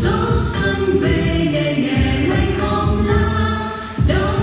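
Choir singing a Vietnamese New Year (Tết) song with musical accompaniment, in long held notes.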